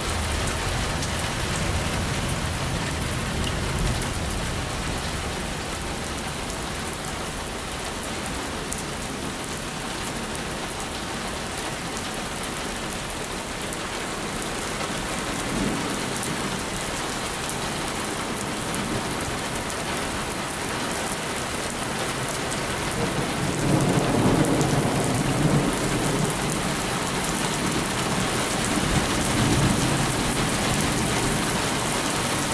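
Heavy thunderstorm rain pouring steadily onto pavement and a bus shelter. Thunder rumbles faintly about halfway through, then louder and longer a little past two-thirds of the way, with another swell near the end.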